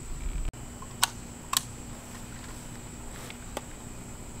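A few sharp clicks and knocks of a Vepr AK-pattern rifle being handled, with two clicks about a second in and a fainter one near the end, after a brief low rumble at the start.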